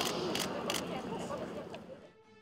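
Faint chatter of voices with a rapid series of sharp clicks, about three a second, fading out just before the end.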